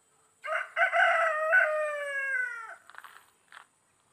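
A rooster crowing once: a single call of about two seconds that drops in pitch at the end.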